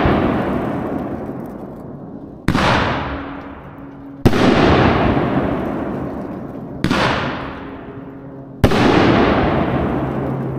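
Dominator Nishiki Crown Kamuro 500 g cake firing its two-inch shells, which burst as gold willows overhead. There are four loud booms about two seconds apart, and each trails off in a long rolling echo.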